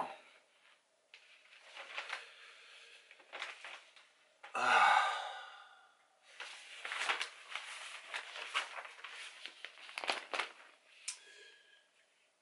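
Newspaper pages rustling and crinkling in irregular bursts as a broadsheet is opened and leafed through, with a short sighing 'uh' from a man about four and a half seconds in.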